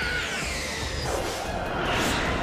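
Anime soundtrack with music and a steady rushing noise, cut by a whoosh effect that falls in pitch over the first second or so.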